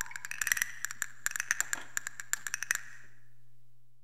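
Closing moments of a folk song recording after the band has stopped: a run of light, irregular percussion ticks and rattles that thins out and stops after about three seconds, over a low steady hum that fades away near the end.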